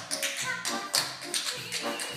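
Tap shoes striking a stage floor in a quick, uneven run of taps over live band music.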